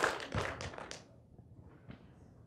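Audience applause thinning to a few scattered claps and dying away about a second in, leaving quiet room tone.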